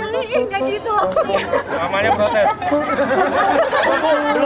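A crowd of voices talking over each other: overlapping chatter from the children and adults gathered around.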